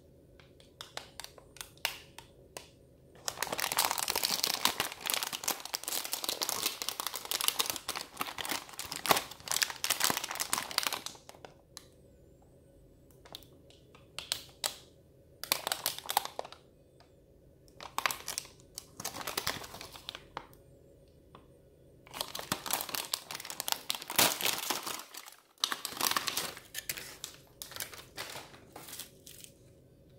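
Foil-lined plastic snack pack crinkling as it is handled and opened, in irregular bursts with quieter pauses between them.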